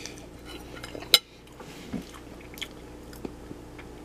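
A person chewing a mouthful of Braunschweiger, with small wet mouth sounds, and one sharp clink of a metal fork set down on a plate about a second in.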